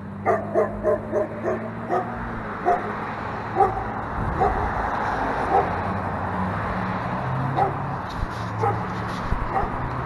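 A dog barking: a quick run of short barks, about three a second, in the first couple of seconds, then single barks now and then. Under it, street noise with a steady low hum that swells in the middle.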